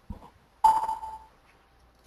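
A single short electronic ding about two-thirds of a second in: one clear tone that starts suddenly and fades within about half a second, heard over a webinar audio line. A faint click comes just before it.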